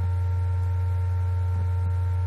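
Laptop cooling fan picked up by the laptop's own built-in microphone: a steady low hum with a few faint steady higher tones above it.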